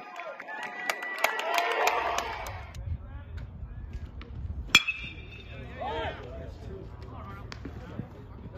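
A metal baseball bat hitting a pitched ball about five seconds in: one sharp ping with a brief high ringing tail, over the voices of spectators and players.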